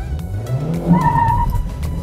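Renault Sandero's 1.6-litre 16-valve four-cylinder engine revving up as the car launches hard from a standstill in first gear for a 0-to-100 km/h run. There is a short high squeal about a second in, the tyres chirping at the launch.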